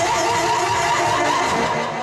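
A woman singer holding a long final note into a hand microphone over a live band with saxophone and drums, the song coming to its end; the note fades out near the end.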